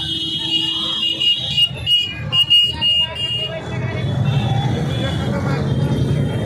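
Many motorcycles running at low speed in a slow procession, mixed with crowd voices. A high-pitched tone is held through the first second or so, then comes in short broken pieces until about three and a half seconds in.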